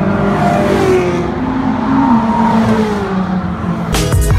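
Track-day sports cars driving down a race circuit's straight, their engine notes rising and falling as they accelerate and go by.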